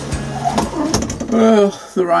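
A man's voice, speaking.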